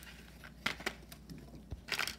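A few light clicks and faint rustles of a clear plastic blister tray and small plastic toy pieces being handled, with a soft low knock near the end.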